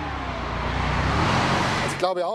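Mercedes-Benz SLR McLaren Roadster with its supercharged V8 approaching along the road at speed, its engine and road noise growing steadily louder as it nears.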